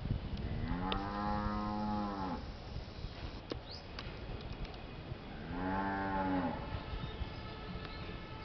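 A cow mooing twice: a long, steady call and then a shorter one a few seconds later.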